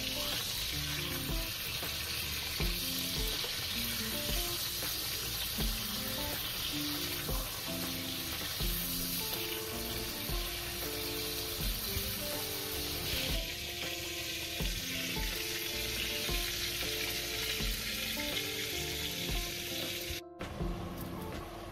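Bacon rashers sizzling steadily in hot oil in a frying pan, moved about with a fork. Quiet background music with a steady beat plays under the sizzle.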